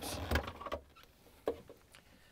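Plastic scraping and clicking as a long flathead screwdriver presses the release tab of a refrigerator ice maker's wire-harness connector and the two halves are pulled apart. Handling noise comes in the first moment, then a single short, sharp click about a second and a half in.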